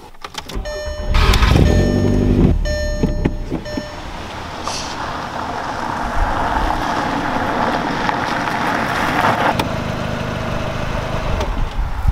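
A Volkswagen hatchback's engine starts about a second in. The car then drives along a leaf-covered dirt track, with engine and tyre noise building steadily, and it settles to idling near the end.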